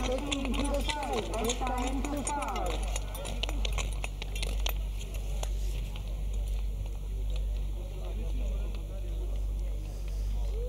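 Ambient sound of an outdoor speed skating rink: faint voices for the first few seconds, then a steady low hum with scattered faint clicks.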